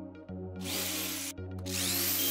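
Cordless drill running in two short bursts, the second starting up with a rising whine as the twist bit drills into plywood, over background music.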